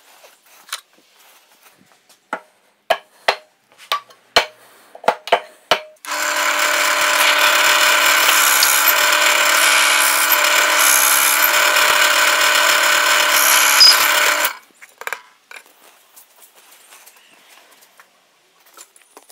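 Drill press running and boring into a strip of reddish hardwood: a loud steady whine that starts suddenly about six seconds in and lasts about eight seconds. Before it, a dozen or so sharp knocks and clicks.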